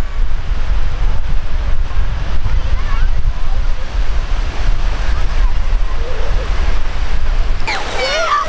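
Wind buffeting the microphone in an uneven low rumble, over the steady wash of small waves breaking on the shore. High children's voices break in near the end.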